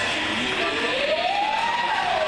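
A single wailing, siren-like tone rises steadily in pitch over about a second and a half, then begins to fall near the end, over the steady background noise of an ice rink.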